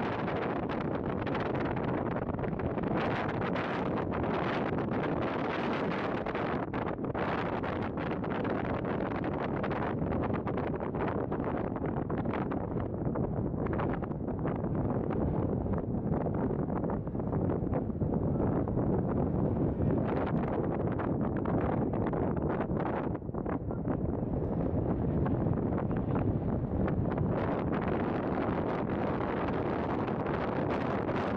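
Wind buffeting the camera's microphone: a continuous rushing rumble that swells and eases a little in gusts.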